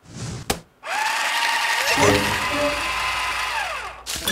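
Paper shredder running for about three seconds as a sheet of paper is fed through it. Its motor whine rises as it starts, holds, and falls away as it stops. Just before, there is a short rustle and a click.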